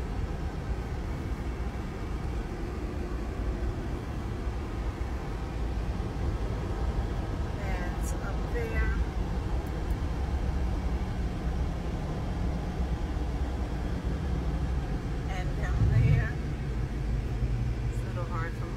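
Road noise inside a moving car's cabin at highway speed: a steady low rumble of tyres and engine, with a brief louder swell about sixteen seconds in.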